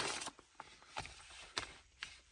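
Quiet handling of a printed paper instruction sheet: a few faint ticks and rustles, one near the start, one about a second in and one near the end.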